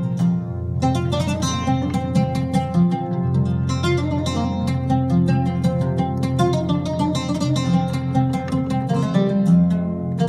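Oud voice on an electronic arranger keyboard, played as a taqsim in maqam Rast: quick runs of plucked notes over a sustained low bass note.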